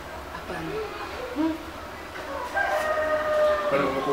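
A rooster crowing: one long, steady held call lasting a little over a second, starting about two and a half seconds in, with faint voices before it.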